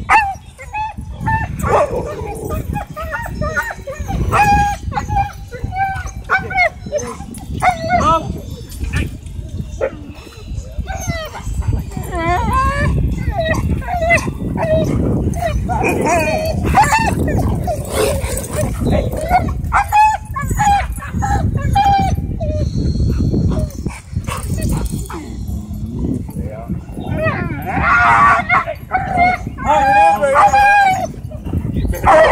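Dogs barking and yipping over and over in short, pitched calls, with a louder run of high calls near the end.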